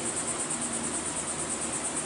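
A steady high-pitched trill pulsing about ten times a second, over a low background hiss.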